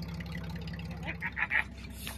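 Jeep Grand Cherokee WJ's engine running low and steady with an even pulse as it crawls over a boulder, with a few short, sharper sounds about a second in.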